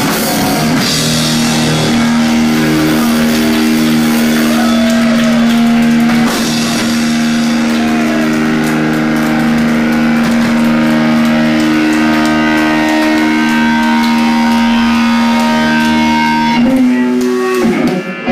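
Live rock band with electric guitars and drums playing loud, a long held guitar note ringing steadily through most of it. The music breaks off about a second before the end, as the song closes.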